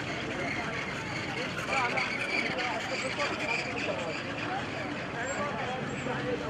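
A large walking crowd, with many voices talking over one another in a steady babble.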